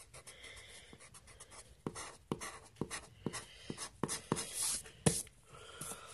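Pencil eraser rubbing on paper to rub out a stray mark, heard as faint scratchy strokes and a series of irregular light ticks where the pencil meets the paper.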